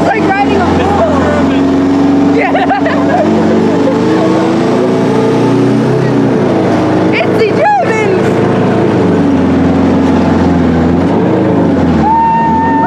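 A tank's engine running steadily as the tank drives along, with a few brief higher-pitched squeals over it.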